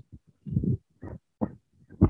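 A few short, low vocal sounds from a man, a brief hum and throat noises, between sentences.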